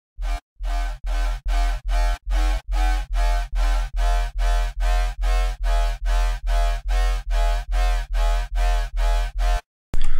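Dubstep-style bass patch from the Serum software synthesizer, run through tube distortion and a comb filter, played as a fast even run of short repeated notes, about three a second, each with a deep sub-bass under a buzzy upper tone. The run stops shortly before the end.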